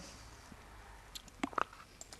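A few faint, short clicks over quiet room noise, two of them close together about a second and a half in.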